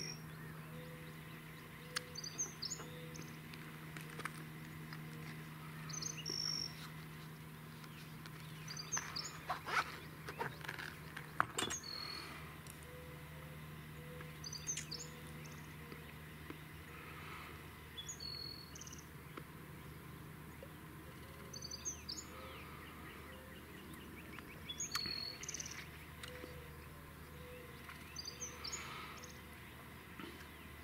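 A small bird calling outdoors, repeating a short high chirp every two to three seconds over a quiet background. A few soft clicks fall near the middle, and a low steady hum fades out about two-thirds of the way through.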